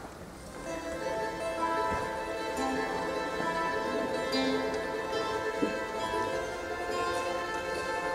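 Andean folk ensemble playing: quenas carry a melody in long held notes over plucked guitar and charango. The music begins about half a second in.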